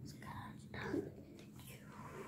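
Faint whispered speech from a child reading quietly to herself.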